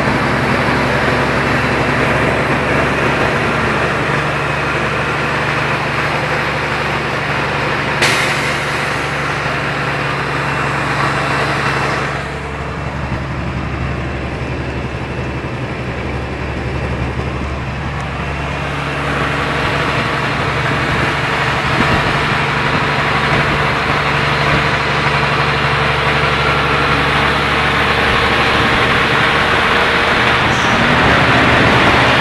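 A Mini car's engine and road noise heard from inside the cabin, with a steady low engine drone under the load of a long uphill climb. There is a sharp click about eight seconds in, and a quieter, duller stretch from about twelve to nineteen seconds.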